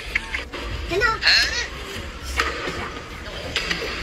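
A person's wordless voice over background music.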